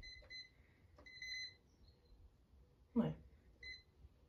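Alarm system keypad beeping as keys are pressed: a short beep, a longer beep about a second in, and another short beep near the end.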